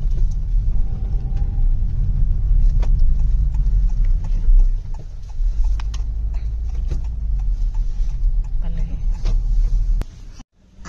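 Steady low rumble inside a moving car's cabin as it drives on a wet road, with scattered light ticks.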